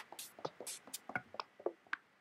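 Electronic drum samples, claps, shakers and percussion hits, finger-played on the pads of a Maschine MK2 controller. The hits come in a quick, uneven pattern, about ten in two seconds.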